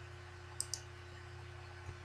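Two quick computer mouse clicks close together a little over half a second in, and a fainter click near the end, over a steady low electrical hum.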